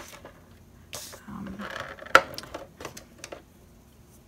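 Handling noise of cardstock and a scoring tool on a score board: soft rustles and light taps, with one sharp click a little over two seconds in.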